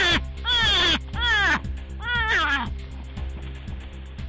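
Four short, high-pitched shrieks from a person in quick succession, each sliding down in pitch, over a steady background music bed. The cries stop after about two and a half seconds, leaving the music.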